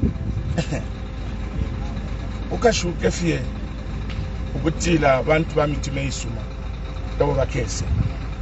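Steady low rumble of road traffic and idling vehicles, with a man speaking in short phrases over it.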